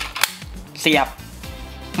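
A single sharp plastic click from an SG candy-toy Progrise Key being flipped open, just before it is slotted into the Zero-One Driver belt.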